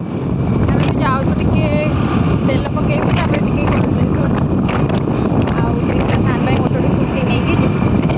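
Wind buffeting the microphone in a loud, steady low rumble, with voices faintly heard over it.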